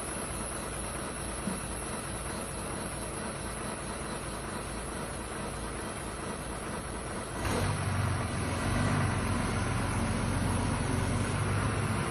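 Vehicle engine idling with a steady hum; about two-thirds of the way through a louder, lower engine drone comes in and holds.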